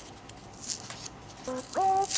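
Faint rustling and light clicks of small paper patches being handled and pressed onto a torn car speaker cone. About one and a half seconds in, a short pitched sound with a quick upward glide begins.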